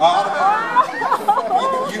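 Audience voices overlapping: several people calling out and chattering at once, with rising and falling pitch.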